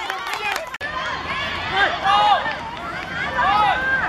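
Children shouting and calling out, with several high voices overlapping.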